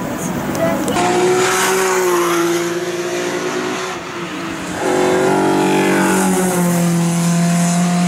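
Opel Manta race car's engine running hard as it passes on the circuit. Its note eases down over a few seconds, drops away briefly, then comes back louder and holds steady from about five seconds in.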